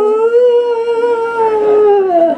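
Two women's voices holding one long sung note together in close harmony, a cappella, the end of a slow gospel song. The note swells a little, then both voices glide down together near the end.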